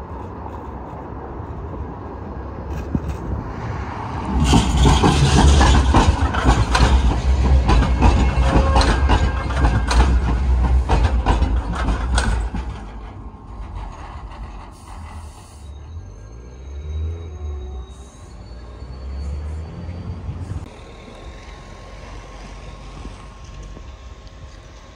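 Sheffield Supertram Siemens-Duewag articulated tram running past close by on street track: a loud rumble with rapid clattering of its wheels from about four seconds in, which drops away about twelve seconds in. Faint high whines follow later.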